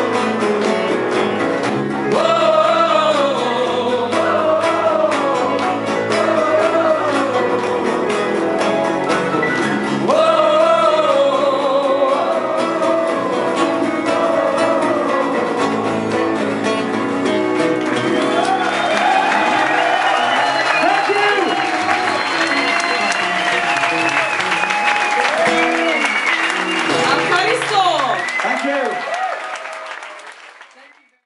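Live acoustic band music: female and male voices singing over acoustic guitars. In the second half, audience applause and cheering rise under the last sung notes, then the sound fades out near the end.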